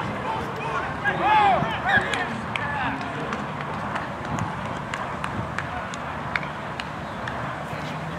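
Loud shouts from several voices across a rugby pitch over a steady outdoor murmur, strongest in the first three seconds. Later come scattered sharp clicks.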